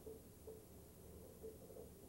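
Near silence: faint low room tone, with no distinct sound standing out.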